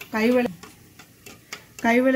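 A spoon whisking curd in a glass bowl, giving a few faint, light ticks against the glass.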